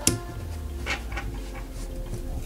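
A sharp click at the start, then a few soft clicks and rustles as paracord is worked through the weave with a steel lacing fid, over faint background music.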